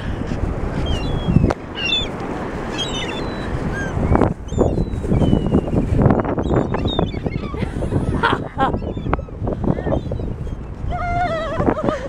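Gulls calling, many short squawks from a scattered flock rising off the beach, over a steady low rushing noise. A longer, lower call comes near the end.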